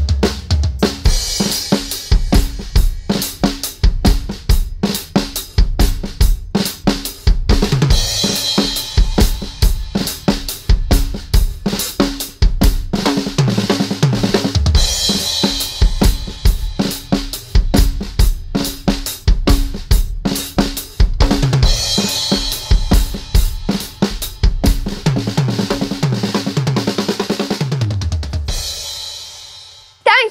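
Acoustic drum kit played alone: a driving beat of bass drum, snare and cymbals. Near the end the beat stops and a cymbal rings on, fading out.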